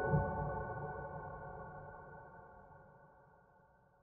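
Soft piano music fading out: the last struck notes ring on and die away steadily to silence by the end.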